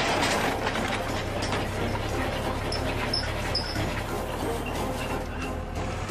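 Tractor engine driving a mounted earth auger as it bores a pile hole into dry soil: a steady low rumble with rattling, under background music.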